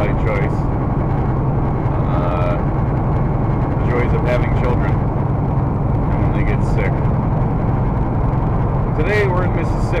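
Steady low drone of a semi truck's engine and road noise heard inside the cab while driving, with a man's voice speaking in short fragments over it.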